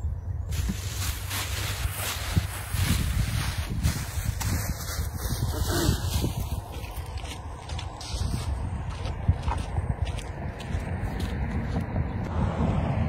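Wind rumbling on the microphone outdoors, with irregular footsteps and rustling in dry grass.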